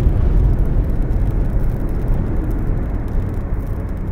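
A deep, steady rumble from an outro sound effect, slowly fading.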